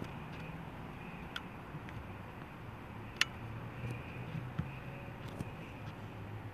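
Faint background hum with a few short, sharp clicks, the loudest about three seconds in.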